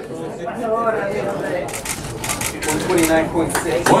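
Several people talking indistinctly in a room, with scattered light clicks; a man's voice comes in clearly near the end.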